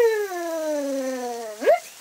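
A man's voice making a long, falling 'ooo' that slides down in pitch for about a second and a half, ending in a short upward yelp.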